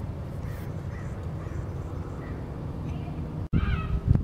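Wind rumbling on the microphone, a steady low rumble. After a cut near the end comes a brief crow-like caw.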